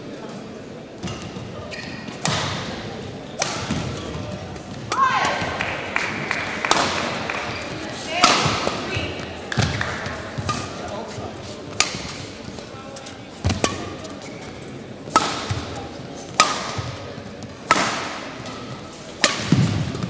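Badminton rally: the racket strikes the shuttlecock about a dozen times, one sharp crack every one to two seconds, echoing in a large sports hall.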